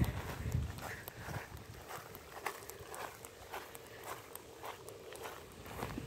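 Soft footsteps walking across a grass lawn, about two to three steps a second.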